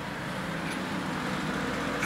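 Steady rumbling background noise with no clear strokes or tones, growing slightly louder toward the end.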